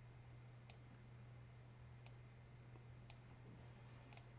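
Near silence: a faint steady hum with three faint computer mouse clicks while adjusting a dialog.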